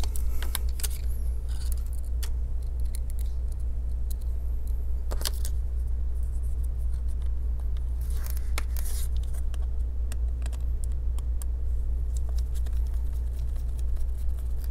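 Light clicks, taps and a brief scrape from a small screwdriver and laptop parts being handled inside an open laptop, over a steady low hum.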